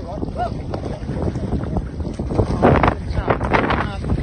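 Wind buffeting the microphone, with water sloshing and splashing as a foal is dragged through a muddy irrigation canal. Short voice sounds break in during the second half.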